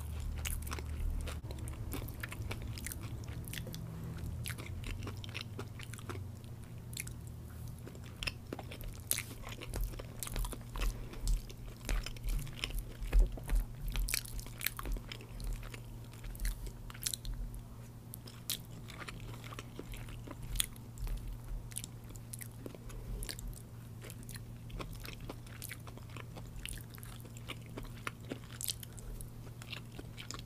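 Close-miked chewing of General Tso's chicken with rice and stir-fried vegetables: many short, sharp crunches and mouth clicks, busiest in the middle, over a steady low hum.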